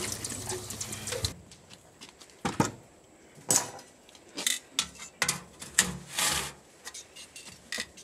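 Tap water running into a steel sink for about a second, stopping suddenly. Then a string of sharp metallic clinks and scrapes from metal tongs handling a metal baking pan.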